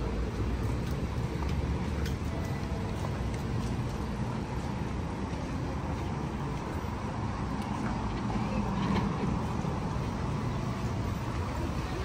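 Steady low rumble of city road traffic, swelling slightly about two-thirds of the way through.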